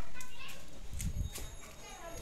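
Voices outdoors, with a few sharp clicks and a low knock in the middle.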